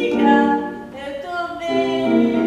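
A woman singing a song in Portuguese over instrumental accompaniment, with a short break between phrases about a second in.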